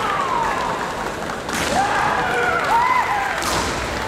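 Kendo kiai: long, drawn-out yells from the fencers that slide up and down in pitch, with two sharp cracks, one about a second and a half in and one near the end.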